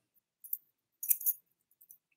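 A few faint, brief metallic clinks and jingles from a bladed jig's metal blade and hardware as the lure is handled, one about half a second in and a small cluster around a second in.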